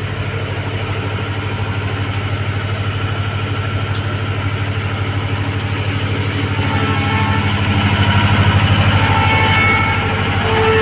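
An engine running steadily at idle, a low pulsing drone that grows louder near the end.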